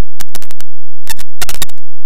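Heavily distorted, clipped logo jingle audio chopped into short, loud stuttering bursts with gaps between them, thickest about a second in.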